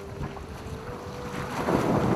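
Ship's steel hull shoving through broken sea ice, with ice scraping and grinding and water rushing along the side over a faint steady hum. It grows much louder about a second and a half in.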